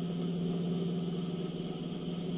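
Steady electric motor hum, low and unchanging, from the idling motor of an industrial sewing machine.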